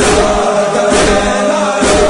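Urdu devotional chant, sung in chorus over a steady beat that falls about once a second.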